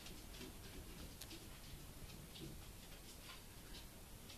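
Faint, irregular little clicks and smacks from young puppies mouthing and nuzzling one another, over quiet room tone.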